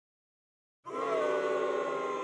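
A sustained, siren-like tone made of several pitches sounding together. It starts almost a second in and holds steady after a slight early downward slide.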